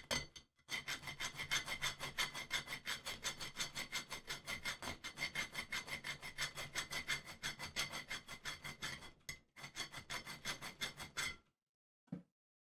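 A hand file rasping back and forth on a small metal airsoft selector switch, in quick even strokes, filing clearance into its detent cutaways. The strokes pause briefly near the end, then stop about a second before it.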